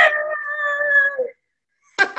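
A woman shouting a long drawn-out "Amy!" at full voice, one high held note that cuts off sharply about a second and a half in.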